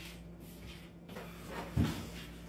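Quiet room with one short, dull thump near the end.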